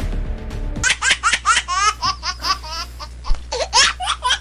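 Background music stops a little under a second in and a run of high-pitched laughter follows, short rising 'ha' sounds about five a second.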